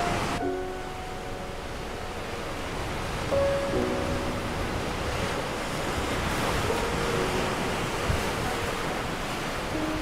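Ocean surf washing steadily onto a beach, with a few soft held notes of background score now and then.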